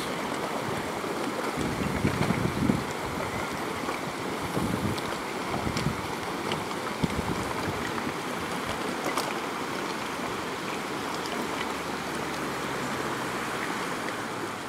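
A river in flood rushing past, a steady wash of water noise, with a few low wind buffets on the microphone in the first seconds.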